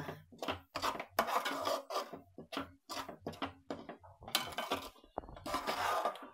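Metal spoon scraping and knocking against a nonstick kadhai as thick, sugary lemon chutney is stirred, in quick irregular strokes a few times a second.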